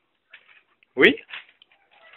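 Mostly quiet, with one short spoken "oui" about halfway through and a faint brief voice sound just after it.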